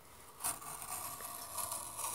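Gerber utility knife blade drawn along yellow 12-gauge Romex cable, slitting the plastic sheathing lengthwise: a steady scraping rasp that starts sharply about half a second in.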